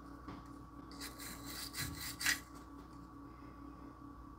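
Faint, scratchy rubbing sounds in short bursts, the loudest a little after two seconds in, over a steady faint electrical hum.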